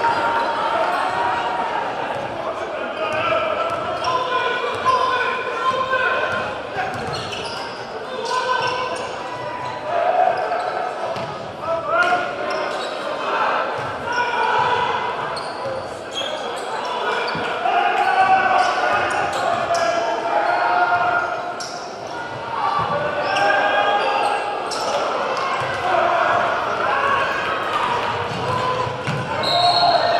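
Basketball game in a large gym: a ball dribbled on the hardwood court with short knocks, under the steady chatter of spectators.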